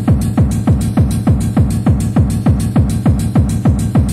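Fast, hard techno playing from a DJ mix: a heavy kick drum at about four beats a second, each hit dropping in pitch, with hi-hats ticking between the beats.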